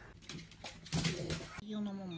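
Brief rustling noise, then near the end an Amazon parrot gives a low, voice-like call held on one pitch.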